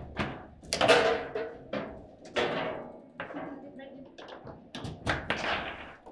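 Foosball play: a run of sharp knocks and thunks as the ball is struck by the plastic figures and hits the table, with rods being jerked and slammed. Voices are heard among the impacts.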